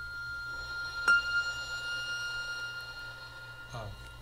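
A pitched percussion instrument ringing with a long, steady high tone. It is struck again about a second in, its loudest moment, which adds a higher ringing tone that slowly fades.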